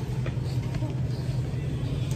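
Steady low rumble of supermarket background noise, with faint voices in it.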